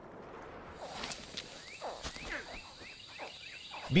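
Outdoor swamp ambience: a steady hiss with a faint high, even drone, and birds giving short, repeated down-slurred calls through the middle.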